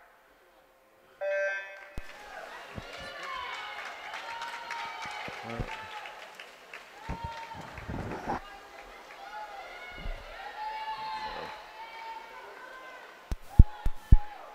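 Electronic swim-start beep, a short steady tone about a second in. It is followed by spectators and teammates cheering and yelling for the swimmers, with several sharp knocks near the end.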